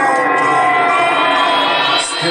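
Loud electro house music from a live DJ set, filled by a long siren-like synth sweep whose many stacked tones glide slowly in pitch, while the beat thins out early on.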